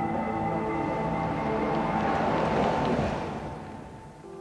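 Background music of held notes, over which a car passes close by: a rushing noise swells to a peak about three seconds in and then falls away.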